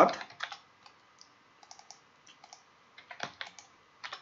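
Typing on a computer keyboard: scattered, irregular keystroke clicks entering a terminal command, with one louder key press a little after three seconds in.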